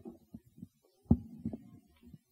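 Handling noise from a stand-mounted microphone being gripped and adjusted in its clip: a few low thumps and rumbles, with the loudest knock about a second in.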